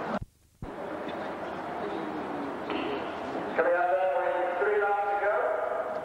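Outdoor stadium ambience that drops out to near silence for half a second just after the start, then a man's voice calling out, distant and unclear, for about two seconds in the second half.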